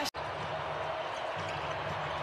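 Basketball game sound on the hardwood court: a ball being dribbled over steady arena background noise, with an abrupt break just after the start where the footage is cut.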